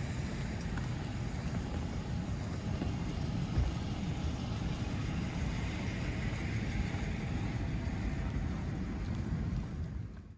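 Steady street noise: a low rumble with the hiss of traffic, and one brief bump about three and a half seconds in.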